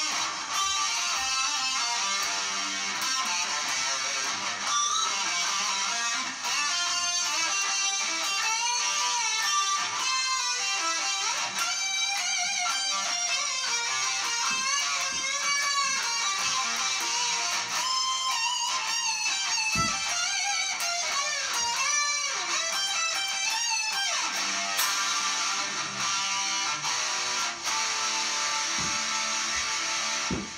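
Electric guitar solo played on a 2001 Dean Flying V with Seymour Duncan pickups through an amplifier: fast lead lines with pitch bends, playing without a break.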